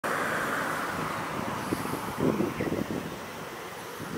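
Road traffic noise: a vehicle passing and fading away over the first second or so, then a softer steady background with a few short low sounds around the middle.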